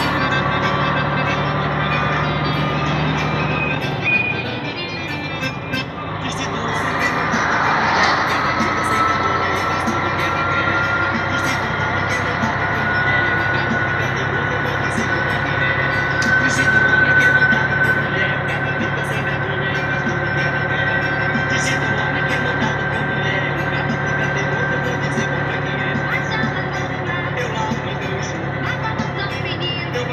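Truck's diesel engine heard from inside the cab while driving on the highway. The engine note eases off about four seconds in, then builds again, with a thin whine climbing slowly in pitch as the truck picks up speed.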